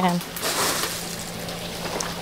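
Dried Liberica coffee beans in their hulls being poured by hand into a mortar, a dry rustling rattle lasting about a second before it fades.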